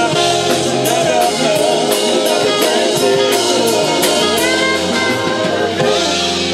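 Live jazz-funk band playing on a steady beat, with drum kit and electric bass guitar among the instruments.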